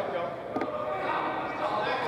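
Voices of players and coaches calling out in a large indoor sports hall, echoing, with a couple of short thuds.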